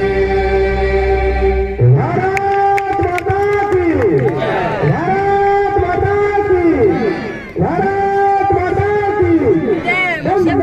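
Music with singing: a steady droning chant over a deep bass stops about two seconds in, followed by a melody of long held notes with a heavy echo, typical of a loudspeaker.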